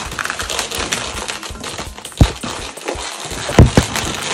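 Inflated Qualatex 260Q chrome latex balloons rubbing and squeaking against each other as they are pinched and twisted together, a continuous crackly rubbing with two much louder squeaks, one about two seconds in and one near the end.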